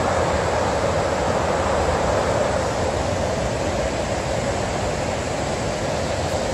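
Steady roar of the Iguaçu Falls: an even, unbroken rush of falling water.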